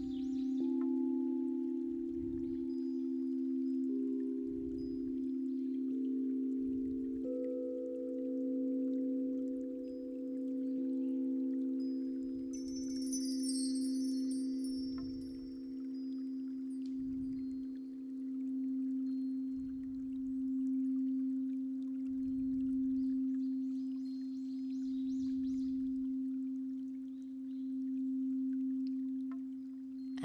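Several crystal singing bowls played around their rims with mallets, holding a low steady hum while higher bowls join one after another in the first few seconds. The sound swells and fades slowly every two to three seconds. A brief shimmer of high chimes comes about halfway through.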